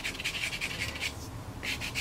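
Pastel stick scratching over sanded pastel paper (Fisher 400) in quick short strokes, about eight a second. The strokes pause for about half a second a second in, then start again near the end.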